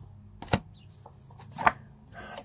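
Two sharp snaps, about a second apart, as tarot cards are pulled from the deck and flipped over in the hand, with a faint rustle of card on card before the second.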